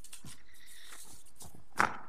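Faint shuffling and rustling of someone moving about in a quiet meeting room, with one sharp knock near the end.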